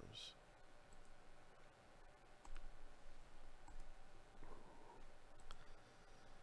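Computer mouse clicks: four faint single clicks a second or more apart, the button being clicked over and over to shuffle a list.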